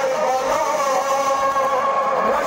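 Men's voices chanting a nawah, a Shia mourning lament, together in long held notes.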